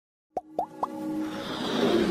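Logo-intro sound effects: three quick plops, each a short upward pitch flick, about a quarter second apart, followed by a swelling whoosh with a held synth tone building up.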